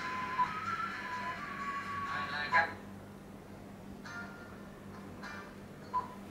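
Pop music playing from an Android car stereo head unit, cut off with a click about two and a half seconds in as tracks are skipped on the touch screen. Brief snatches of other songs and another click follow.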